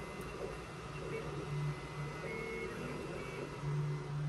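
QIDI i-Fast 3D printer running a print with its front door open: a steady low hum with short whining tones that shift in pitch and come and go as the print head moves.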